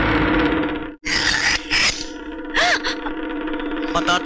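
Dramatic film soundtrack: a background-score note held steady under noisy sound-effect swishes and hits, with a sudden break about a second in and short gliding cries later.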